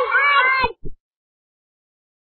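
Cartoon-like vocal sound effect of an end-screen logo sting: high, gliding, meow-like calls that stop suddenly well before a second in, followed by two short low thumps.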